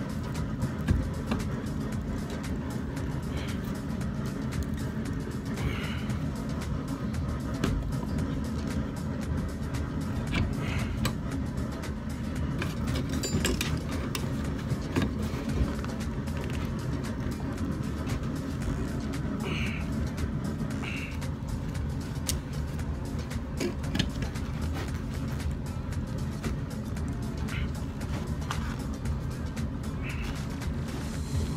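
Steady roar of a propane forge burner, with a few sharp metal clinks as hot steel is worked in a bench vise.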